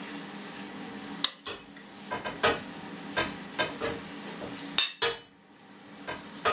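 Metal spoon clinking and scraping against a ceramic plate as chopped meat is scooped onto flatbread: about half a dozen short clinks, the loudest near the end, over a steady low hum.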